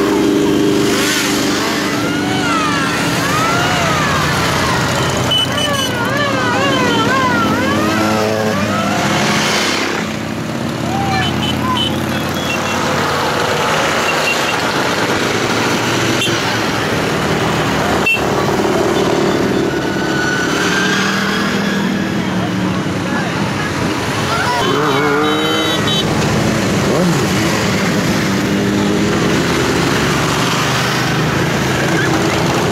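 Motorcycles riding past one after another in a procession, their engines running over steady crowd chatter. A high warbling tone rises and falls over and over for several seconds near the start, and again briefly later on.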